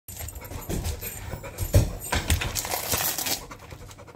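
A dog panting, with thin plastic vacuum-pack wrapping crinkling as it is peeled off a raw steak, strongest in the second half. A dull knock sounds a little before halfway.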